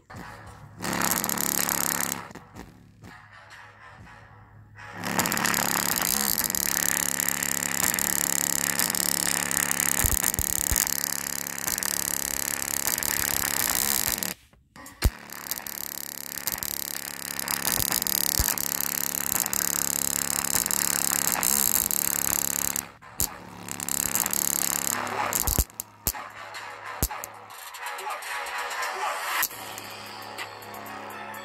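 Bass-heavy music played at high volume through a small bare JBL Go 2 speaker driver, heavily distorted as the cone is overdriven far past its normal travel. The sound drops out abruptly a few times, once almost to silence about halfway through.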